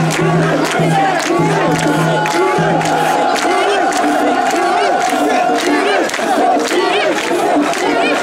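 A crowd of mikoshi (portable shrine) bearers chanting together in a quick repeated rhythm as they carry and jostle the shrine. Sharp clacks are scattered through it, and a steady low tone hums underneath for the first three seconds.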